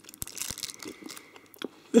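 Thin plastic film on a dried haw fruit roll crinkling and tearing as it is peeled off, with a few short crackles and clicks, busiest in the first second.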